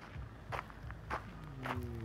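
Footsteps crunching on dirt and gravel, three steps a bit over half a second apart.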